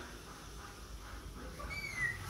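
A kitten mewing faintly: one short, high, slightly falling mew near the end.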